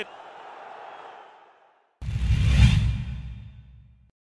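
Stadium crowd noise fading away, then about halfway through a sudden loud whoosh sound effect. It has a deep rumbling low end and dies away over about two seconds: a broadcast transition stinger for an on-screen graphic.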